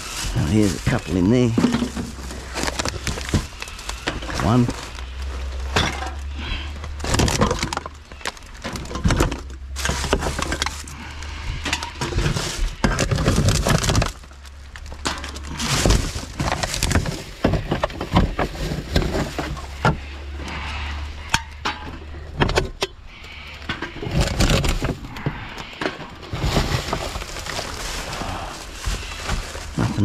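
Gloved hands rummaging through a wheelie bin of recycling: cans and glass bottles clink and knock together amid rustling plastic bags and packaging, in frequent short clatters throughout.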